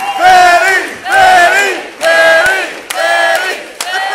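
Audience chanting "Betty!" in unison: four loud shouts of many voices together, about one a second.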